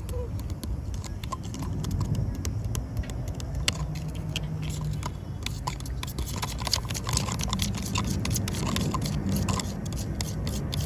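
A metal spoon stirring sugar into water in a plastic cup: irregular clicks and scrapes of the spoon against the cup, coming more often in the second half, over a steady low rumble.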